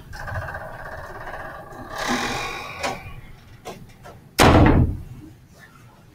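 A buzzy scraping sound for about two seconds, then a short swish, a couple of small clicks and one loud, deep thump about four and a half seconds in.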